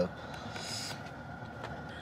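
Steady low hum inside a parked car's cabin, with a brief soft hiss a little under a second in.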